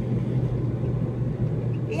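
Steady low hum of a car's engine and tyres heard inside the cabin while driving along a street.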